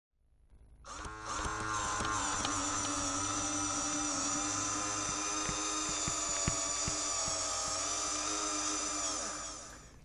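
Intro sound effect: a steady whirring drone with several held tones and a few faint clicks, starting about a second in and fading out near the end.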